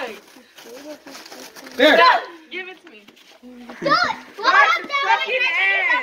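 Excited children's voices calling and shouting: a short loud call about two seconds in, then a longer stretch of high-pitched shouting in the last two seconds.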